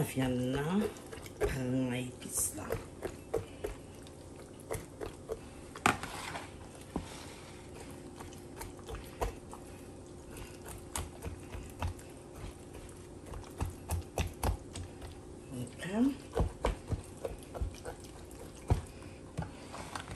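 Hands and a fork working seasoning paste under the skin of a raw turkey in a bowl: wet squishing with many scattered light clicks and taps, one sharper tap about six seconds in. Brief bits of a voice come near the start and again near the end.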